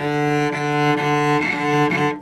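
A cello bowed on one sustained low note, with a few quick bow changes: the tone dips briefly about half a second in, again past the middle and just before the end.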